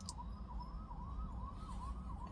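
Siren in a fast yelp, sweeping up and down about three times a second, heard faintly over the low rumble inside a car.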